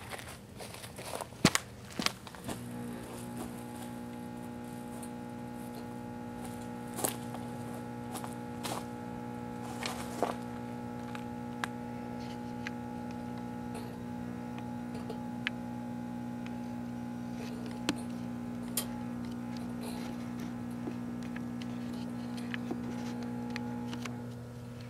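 A 1984 Kenmore microwave oven running with a steady electrical hum, which grows stronger and steadier about two and a half seconds in. A compact fluorescent bulb arcing and burning inside it gives sharp cracks and pops every second or two, the loudest in the first couple of seconds.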